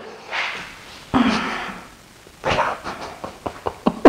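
Breathy exhales and a short voiced burst, then stifled laughter breaking out in quick short bursts over the last second and a half.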